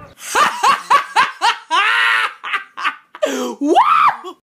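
A girl laughing in short, high-pitched bursts, with a longer drawn-out cry in the middle and a rising squeal near the end.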